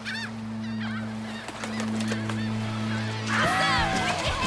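Birds calling: repeated arching squawks, growing louder and more crowded about three and a half seconds in, over a steady low drone.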